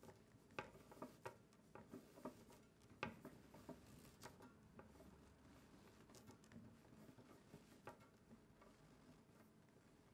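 Near silence with faint, scattered light taps and rustles of a compression stocking being worked by hand over a metal donning frame, most of them in the first half.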